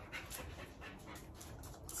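A dog panting faintly, its breaths coming in a quick, even rhythm.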